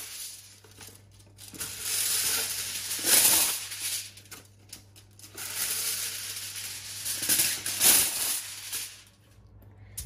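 Aluminium kitchen foil crinkling as a sheet is handled and spread flat, in two long rustling stretches with a quieter gap between them.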